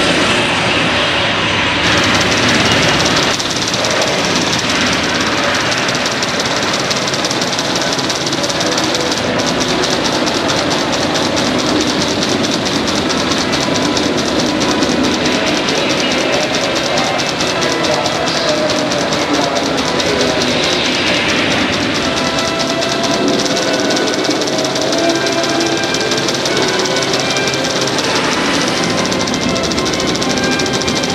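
Recorded sound of a Saturn V rocket launch played loud through the exhibit's speakers: a steady, dense rumble that fills out about two seconds in and carries a fine crackle through most of its length.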